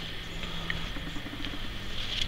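Faint rustling and light handling of cotton shirts, with a few soft ticks over a steady low hum.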